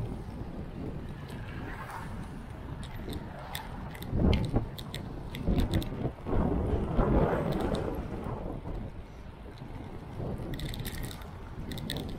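Wind rushing over the microphone of a camera riding along a wet city street, with low road and traffic rumble underneath and scattered sharp clicks. The wind swells loudest about four seconds in and again from about six to eight seconds.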